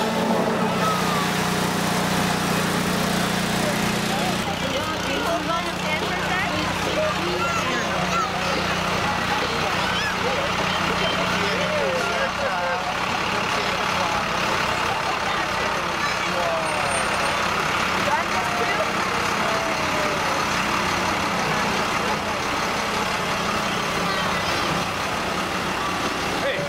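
A large vehicle's engine running steadily at low speed, its hum easing slightly a few seconds in, under the overlapping voices of a crowd of people talking and calling out.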